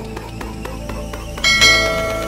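Background music with a steady beat; about one and a half seconds in, a bright bell chime strikes over it and rings on, a notification-bell sound effect.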